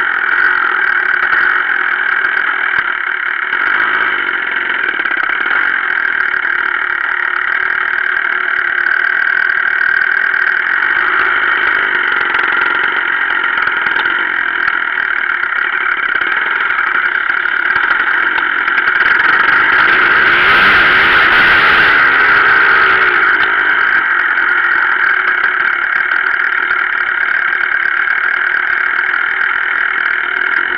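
Enduro dirt bike engine running steadily under way, heard close from the bike itself, with a louder stretch about two-thirds of the way through.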